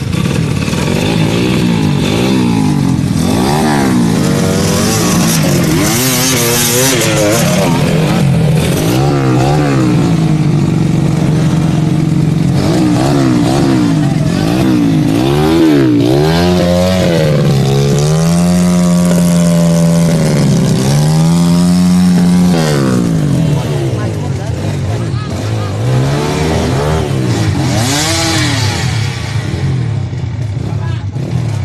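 Off-road trail motorcycle engines revving over and over, the pitch climbing and dropping in quick blips, with a longer held rev about two-thirds of the way through, as the bikes are worked through deep mud.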